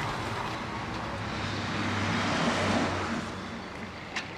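Road traffic: a motor vehicle passing, swelling to a peak about two and a half seconds in and then fading away.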